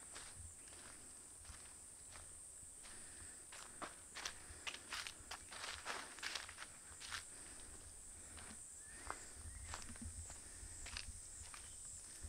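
Footsteps of someone walking a dirt trail covered in dry fallen leaves, each step a soft irregular crunch, the steps coming thicker and louder a few seconds in. A steady high-pitched buzz sits behind them.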